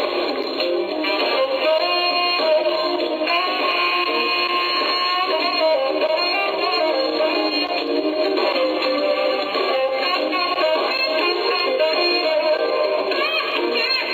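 A live smooth-jazz band playing, with a saxophone lead line over electric guitar and drums. The sound is thin, with almost no bass and a dull top, as if replayed through small computer speakers.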